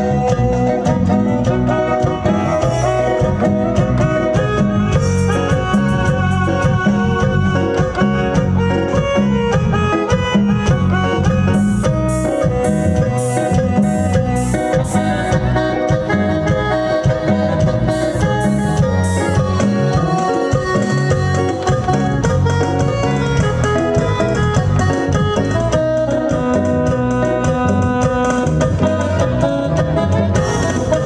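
A live band playing chilena dance music, led by an electronic keyboard, with a steady, driving beat and a brief run of evenly spaced cymbal strokes in the middle.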